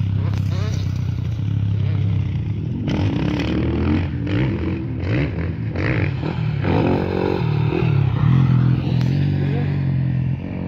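Motocross motorcycle engines revving on a dirt track, the pitch rising and falling as the throttle opens and closes. The revving is busiest in the middle stretch.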